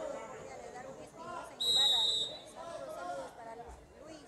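A short, shrill referee's whistle blast, about two-thirds of a second long, about a second and a half in. It is heard over the chatter of spectators around the court.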